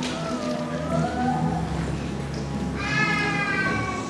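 Soft background music under a pause in speech. A low sustained chord is held throughout. Over it, a drawn-out voice-like tone slides upward in the first couple of seconds, and a higher tone is held from near the three-second mark.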